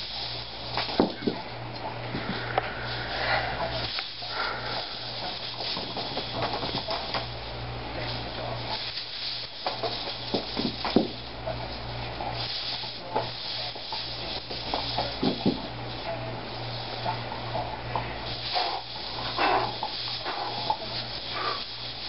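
Hula hoop rubbing and knocking softly against the body, heard as scattered small knocks and rubbing over a steady low electrical hum and hiss.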